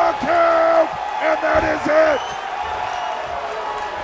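A man's excited, drawn-out shouting: two long cries in the first two seconds. These give way to the steady noise of a fight crowd.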